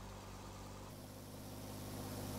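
Fire engine's motor running low and steady, heard as a faint hum, with a slight change in its tone about a second in.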